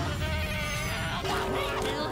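A cartoon character's high, wavering whimper of distress, over background music.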